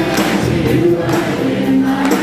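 A live contemporary worship band: several voices singing a held melody together over acoustic guitar and drums, with a steady beat.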